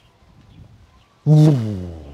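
A man's voice making one loud, drawn-out sound that falls in pitch and fades, starting about a second in. It is a vocal imitation of the bomb going off.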